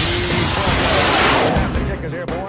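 Whoosh transition sound effect: a fast rising sweep that opens into a long airy hiss, slowly sinking in pitch and ending at about two seconds, over background music.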